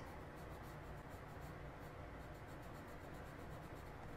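Coloured pencil scratching faintly on paper in quick, repeated short strokes, laying down dark shading with heavy pressure.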